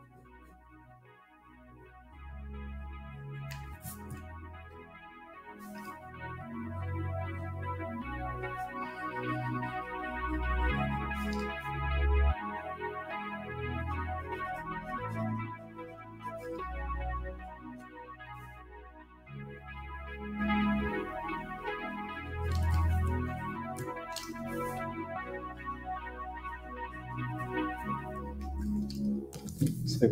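Instrumental background music with keyboard chords over a bass line, coming in quietly and filling out about two seconds in.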